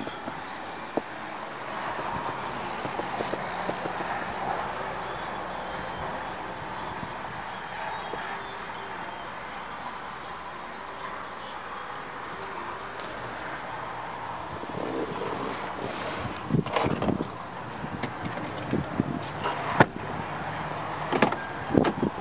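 Steady background noise in a parked SUV's cabin. In the last third it gives way to a string of knocks and thumps, the sound of handling inside the vehicle as someone moves into the driver's seat.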